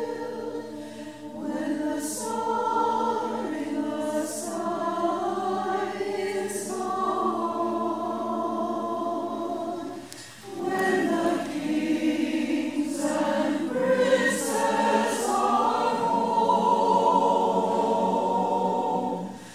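A choir singing slow, sustained sung phrases, with a short break for breath about ten seconds in.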